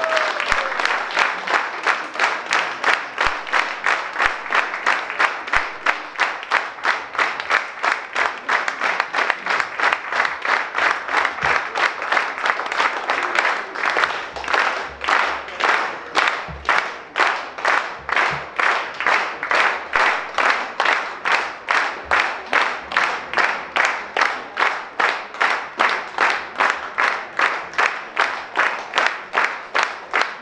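An audience applauding. The last sustained note of the choir dies away just as it begins, and the clapping soon falls into steady rhythmic clapping in unison, about two to three claps a second.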